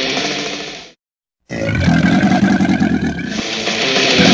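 A loud sound fades and cuts off to silence just under a second in; about half a second later a creature's roar sound effect runs for about two seconds, and music starts shortly before the end.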